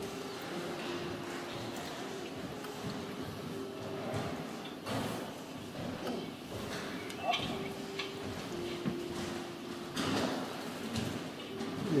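Faint, indistinct voices in a reverberant hall, with a low steady hum that breaks off and returns several times.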